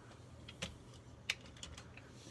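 Faint, scattered clicks of the plastic Transformers Masterpiece MP-30 Ratchet figure being handled and turned close to the microphone, the sharpest a little over a second in.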